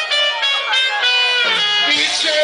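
Live band music played loud through the stage sound system, with a guitar prominent among the instruments.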